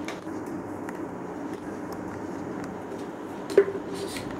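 Handling of a PVC pipe and its wires on a tabletop: a few faint clicks and one sharp knock a little before the end, over a steady background hum.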